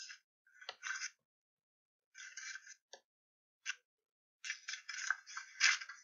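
Glossy magazine pages being leafed through and handled, paper rustling in short bursts with gaps between them, busier and longer near the end.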